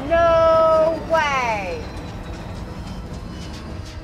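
A reactor's high, drawn-out exclamation: an "ooh" held steady for about a second, then a falling "oh". The show's soundtrack runs quieter underneath for the rest.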